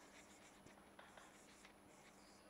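Faint strokes and squeaks of a marker writing on a whiteboard, with a few small taps.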